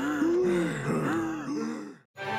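Two elderly men's voices groaning and gasping, out of breath after marching, in a few short rise-and-fall groans that cut off at the end.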